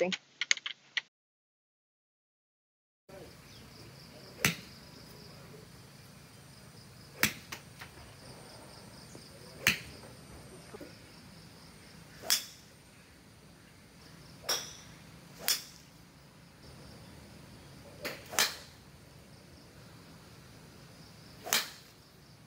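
Golf balls struck off a driving-range turf mat: a series of crisp single clicks of club on ball, eight in all, roughly every two to three seconds.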